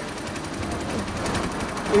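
A small engine running with a rapid, steady rattle, under general street noise.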